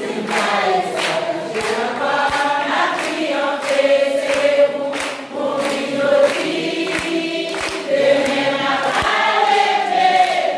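A congregation singing a hymn together, women's voices prominent, with hands clapping steadily in time.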